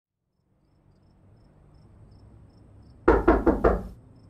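Four quick knocks on a door, evenly spaced, about three seconds in, over a faint background hum.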